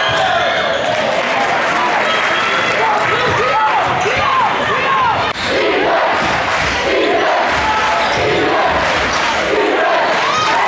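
Crowd in a school gymnasium during a basketball game: steady shouting and cheering from the stands, with a basketball bouncing and sneakers squeaking on the hardwood court.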